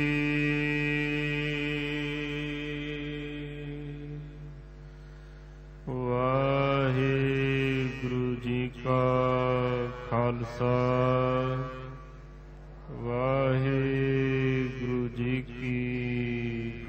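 Sikh devotional hymn singing (Gurbani kirtan): a held note from the end of a sung line fades away over about four seconds. After a short pause, wordless melodic vocal phrases with gliding pitch begin about six seconds in, break off briefly near twelve seconds, and resume.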